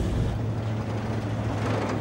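Steady low drone of an airliner's engines heard inside the cockpit in flight.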